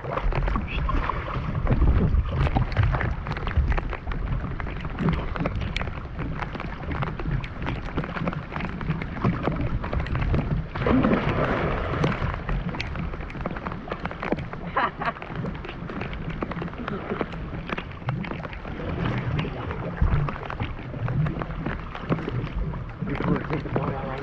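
Heavy rain pattering on a lake surface and water sloshing against a camera held at the waterline, with a dense run of sharp drop hits and a low rumble throughout. A louder splash of churned water comes about eleven seconds in.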